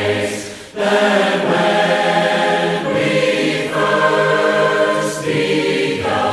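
Choir singing a slow hymn in long held chords, with a brief break between phrases just under a second in.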